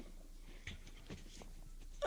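Faint handling noise from a stage microphone: a few light knocks and rustles, the clearest a little past half a second in, over the low hiss of the live recording.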